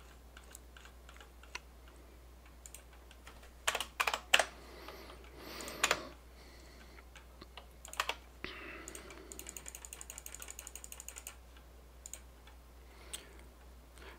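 Quiet computer keyboard keystrokes and clicks, with a few louder clacks about four seconds in and a quick, even run of ticks at about a dozen a second around the ten-second mark.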